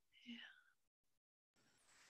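Near silence, with one faint, brief murmur of a voice about a third of a second in.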